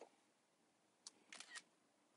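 Faint clicks in near silence: a short cluster about a second and a half in, the camera-shutter sound of an iPad taking a screenshot.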